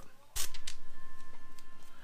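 A rod handle with its reel is set down on a tabletop: one knock about a third of a second in, then a few faint clicks. A faint steady high tone runs on under them.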